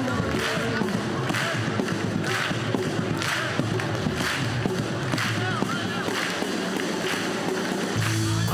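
Live band playing: a drum kit struck with sticks, cymbal and drum hits coming at a regular beat over bass and other instruments.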